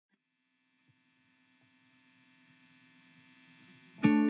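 Near silence: a faint steady hum that slowly grows louder.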